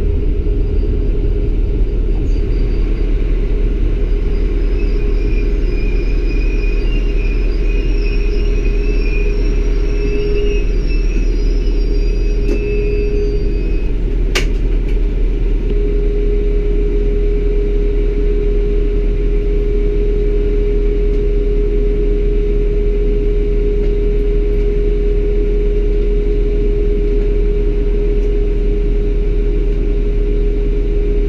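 LINT 41 diesel railcar heard from the driver's cab: a steady low engine rumble with a constant hum as the train slows and stands at a station platform. A faint high warbling whine runs from a few seconds in until about halfway, and there is a single sharp click shortly after.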